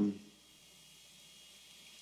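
A man's drawn-out 'um' trails off in the first moments, then near silence: a faint steady hiss of room tone.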